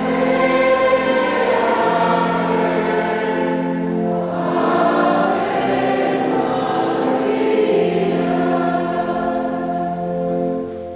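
A choir singing in several parts, slow held chords that change every second or two.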